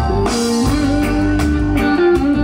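Live band playing amplified music: drum kit, bass and guitar under a melody line that holds long notes with small slides.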